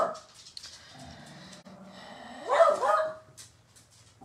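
A pet dog barks, one loud bark a little past halfway through, at horses being walked along the road.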